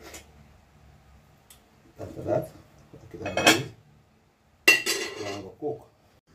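A metal spoon clanking against an aluminium pot lid: a sharp clank with a brief metallic ring about three-quarters of the way in, followed by a smaller knock.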